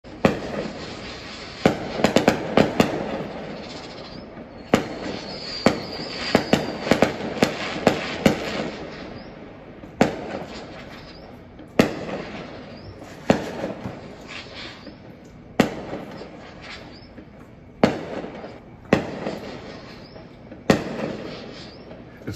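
Neighbourhood fireworks going off: sharp bangs every second or two, each trailing off in a rumbling echo, with quick runs of crackling pops about two seconds in and again around seven seconds. A brief high whistle sounds about four seconds in.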